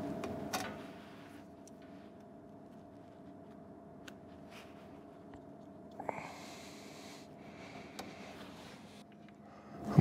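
Faint handling sounds as thermostat wire plugs are pushed into the side panel of a diesel radiant heater: a few light clicks and a brief rustle about six seconds in, over a faint steady hum.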